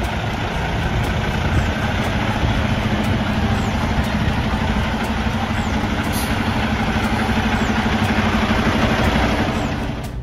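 Kenworth T680 semi truck's diesel engine idling steadily.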